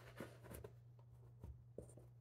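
Faint rustling and a few light taps of cut-out figures being peeled off and pressed onto a flannel board.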